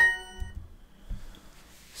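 Duolingo app's correct-answer chime: a short, bright ding that rings out and fades within about half a second, signalling a right answer.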